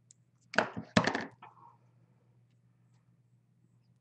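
Scissors snipping through a thin chipboard embellishment: two sharp cuts close together about a second in.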